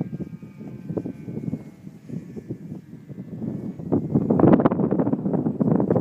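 Wind buffeting the microphone, gusting louder from about four seconds in, over the faint high whine of a distant radio-controlled Extra 260 model plane's motor, its pitch slowly falling.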